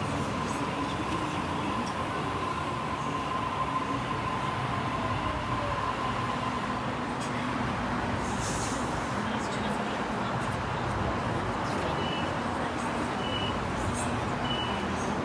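Sydney Trains Waratah double-deck electric train pulling into the platform and stopping, its motors giving a steady whine and a slowly falling tone as it slows. A short hiss comes about halfway through. Short high beeps repeat near the end as the doors open.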